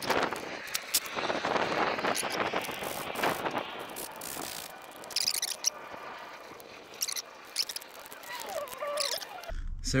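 Handling noise of a rubber boot being worked onto a new wiper motor and its metal linkage: rubbing and scuffing with scattered clicks and knocks, and a short wavering squeak near the end.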